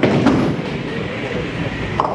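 A ninepin bowling ball lands on the lane with a knock, then rolls along it with a steady rolling rumble.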